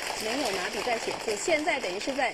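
Speech: a voice talking over a steady background hiss.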